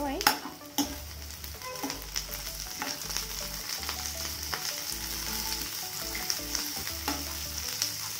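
Mixed vegetables sizzling as they stir-fry in a kadai, with a steel spoon scraping and clicking against the pan as they are stirred. The two sharpest clicks come within the first second.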